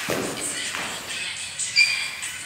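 Dancers' feet thudding and shuffling on a studio floor as they run through a routine, with a brief high squeak near the end.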